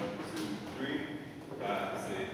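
A man's voice speaking in a large, reverberant room; the words are not clear.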